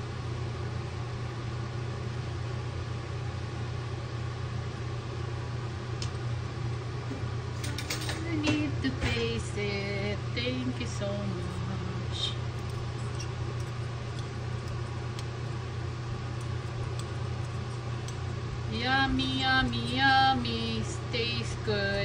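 A steady low machine hum, with a few light clicks of a fork and spoon against a non-stick pan of noodles. A woman's voice murmurs briefly twice, near the middle and near the end.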